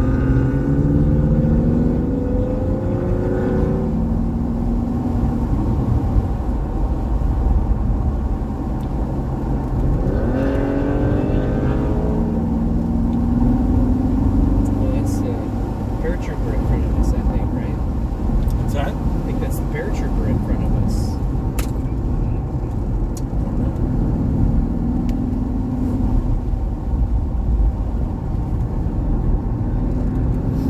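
A Porsche sports car's engine heard from inside the cabin, running at moderate speed and pulling through the gears, its note rising and falling with throttle and shifts, with a clear climb in pitch about ten seconds in. A few sharp ticks come through in the middle.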